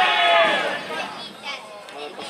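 Shouting voices at a football match: a drawn-out call in the first moment that fades within about a second, leaving a quieter stretch.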